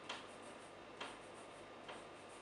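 Chalk tapping on a chalkboard as dashed lines are drawn, three short, sharp taps at an even pace of about one a second.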